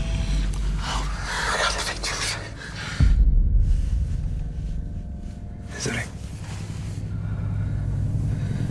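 Film-trailer sound design: a low rumble with breathy, rustling noises over the first couple of seconds, then a sudden deep boom about three seconds in that leaves a sustained deep drone.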